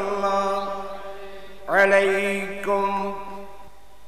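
A man chanting in a drawn-out melodic style, amplified over a microphone: a held note fades at the start, then a new phrase rises a little under two seconds in, is held for about a second and a half, and trails off.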